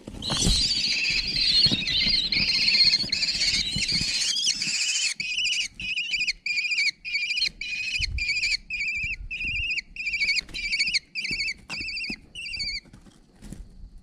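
Kestrel chicks about 17 days old screeching to beg for food as an adult kestrel lands in the nest box, with wing flaps and scuffling at the start. The shrill calling is continuous for about five seconds, then breaks into separate calls about two a second that stop near the end.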